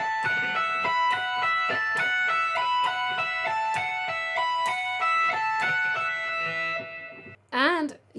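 Electric guitar playing a fast repeating tapped lick high on the neck, the notes tapped with the edge of the pick at the 17th and 19th frets and pulled off to the 14th and 12th, an even stream of quick notes that stops about seven seconds in.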